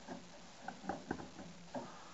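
White plastic cartridge of a rainwater filter handled and fitted back into its housing: a few short clicks and knocks around the middle, and one more near the end.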